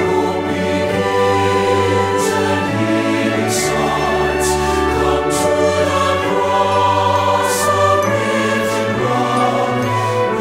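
SATB church choir singing an anthem in held chords with instrumental accompaniment, the words carried on long sustained notes over a steady bass.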